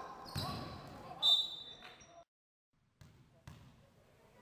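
Basketball play on a wooden sports-hall court: a ball bouncing, a sharp high squeak about a second in typical of a shoe on the floor, and a shout of "come on". The sound cuts off abruptly about two seconds in, then faint hall noise returns.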